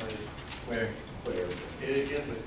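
Indistinct speech: low voices talking, too unclear to make out words.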